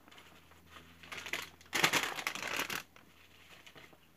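Paper being handled, rustling and crinkling in a burst that starts about a second in and is loudest in the middle, lasting about a second and a half.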